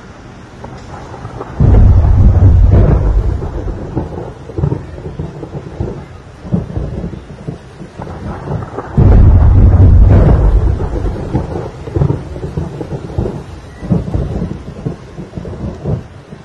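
A thunderstorm with rain: two loud thunderclaps, one about two seconds in and one about nine seconds in, each rumbling away over a couple of seconds, with smaller rumbles between them over a steady wash of rain.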